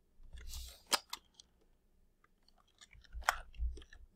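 A few faint, sharp clicks, about four in all, with a brief soft hiss near the start and some low thumps.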